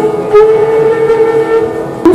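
Bansuri (bamboo transverse flute) holding one long, steady note that fades slightly toward the end.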